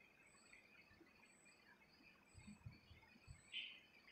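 Near silence: faint room hiss, with a few soft low knocks in the second half and a brief faint higher sound near the end.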